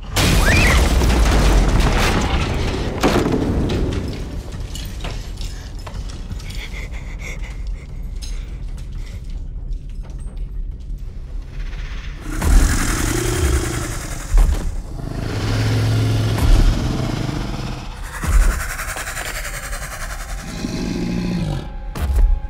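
Horror film sound effects: a loud crash and rumble at the start, then a quieter stretch, then a series of heavy booming hits in the second half, under a tense music score.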